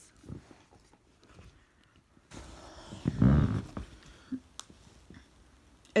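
Rustling and handling noise as a phone is carried and moved about, with a loud low rumbling thump about three seconds in and a sharp click a second later.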